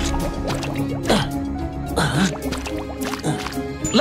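Background music with cartoon mud sound effects as a stick is poked into a swamp: wet plopping squelches, roughly one a second.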